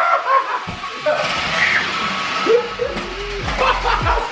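Brief children's voices and household play noise, then background music with a steady low bass comes in about two-thirds of the way through.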